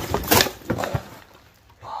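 Hard objects knocking and clattering as hands rummage through a cardboard box and lift out a small wooden case. There are a few sharp knocks in the first second, then it falls quiet.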